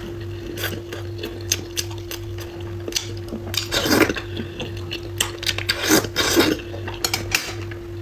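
Close-miked eating sounds: chewing and smacking of a mouthful of braised fish, with chopsticks clicking against the porcelain bowl, the loudest bursts about halfway through and again near six seconds, over a steady low hum.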